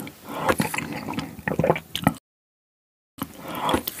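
Close-miked chewing and wet, squishy mouth sounds from eating, with many small clicks. The sound drops out to total silence for about a second just past the middle, then the chewing resumes.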